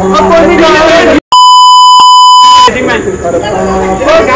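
A loud, steady single-pitch beep lasting about a second and a half, a censor bleep edited over the audio. It cuts in after a brief dropout about a second in, with agitated men's voices shouting before and after it.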